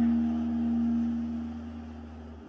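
Background music: a sustained low drone of a few steady tones, fading away toward the end.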